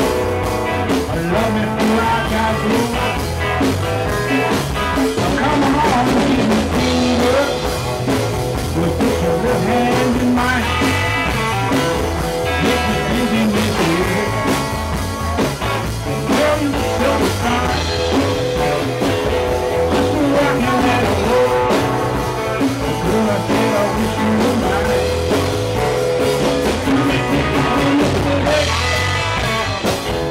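Live rock and roll band playing: electric guitar, bass guitar and drum kit with a steady beat.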